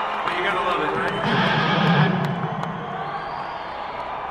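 A man talking to the crowd over an arena PA system, heard on an audience recording with crowd noise from the audience under it; the voice fades somewhat in the last second.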